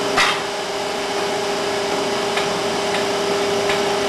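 Schaefer Technologies LF-10 semi-automatic capsule liquid filler running its liquid backfill cycle, its positive displacement pump pumping liquid into the capsule bodies. It gives a steady hum with a clear low tone, a sharp click about a fifth of a second in, and a few fainter clicks later.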